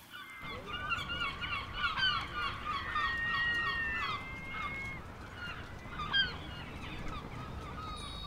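A flock of gulls calling overhead: many short, overlapping mewing calls, with a couple of longer held calls in the middle.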